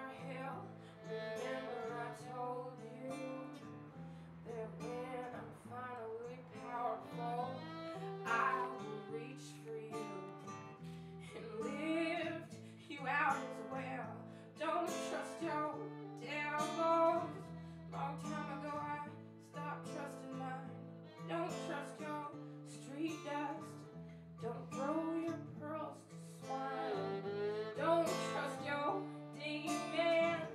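Live acoustic song: a singer's voice over bowed violin and plucked-string accompaniment.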